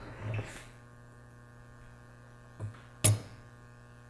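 A small hammer strikes a steel screw held in hemostats once, sharply, about three seconds in, with a lighter knock a moment before; the screw acts as a drift to tap a brushless motor's shaft out of its pinion gear. A steady electrical mains hum runs underneath.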